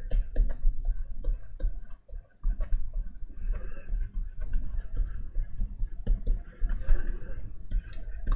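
A pen stylus tapping and scratching on a drawing tablet during handwriting: a run of quick, irregular clicks.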